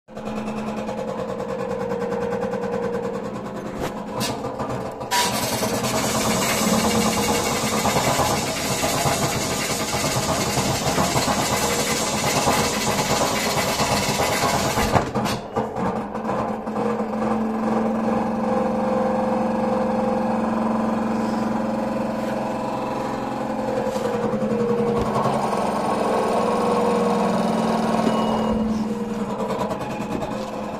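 LG WD-10600SDS front-loading washing machine spinning its drum in a service-mode spin test, with a steady motor whine. A loud rushing noise joins in at about five seconds and cuts out sharply about ten seconds later.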